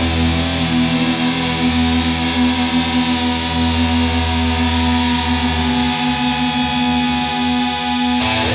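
Black metal music: a distorted electric guitar chord held and ringing steadily, with no drums.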